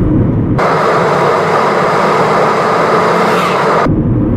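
Steady in-car engine and road rumble. About half a second in it is abruptly replaced by a loud, even hiss with no low rumble under it, and the hiss cuts off just as suddenly shortly before the end.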